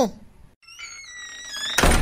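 Cartoon sound effects: a faint tone that slowly falls in pitch, followed near the end by a loud short thump.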